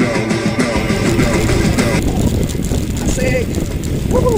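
Background rock music with guitar plays for the first half and then stops, while the low rumble and rattle of a mountain bike riding over a rough dirt trail fills the rest. A brief voice call comes near the end.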